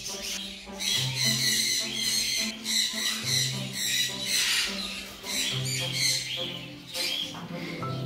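Parrots squawking in repeated harsh calls, over background music with a steady, repeating bass line.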